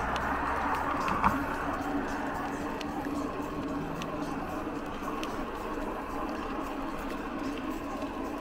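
Steady rolling and wind noise from a mountain bike riding along a smooth highway, with a faint steady hum underneath.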